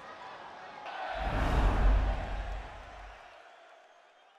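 Faint crowd noise from the stands, then about a second in a swelling whoosh with a deep rumble that peaks near the middle and fades away: a broadcast transition sound effect for a logo sting.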